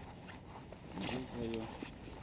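Mostly quiet, with a steady low background hiss and rumble. About a second in there is a short rustling scrape of clothing or gear, and a man says a single short word.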